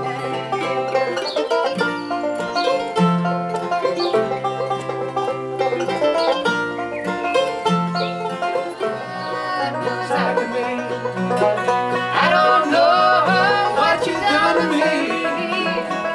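Acoustic bluegrass band playing an instrumental break between verses: banjo, mandolin and acoustic guitars picking over a steady bass line.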